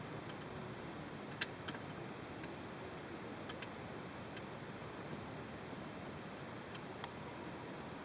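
A few light, irregular clicks of a long hex key turning and shifting in a frame bolt as the bolt is tightened, over a quiet steady room background.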